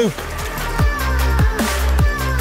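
Background electronic music in a drum-and-bass style, with a heavy, steady bass and a regular beat. A low note drops in pitch about every half second.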